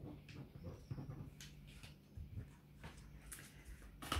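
Tarot cards being shuffled by hand: faint rustling with a few soft card flicks scattered about once a second, over a low steady hum.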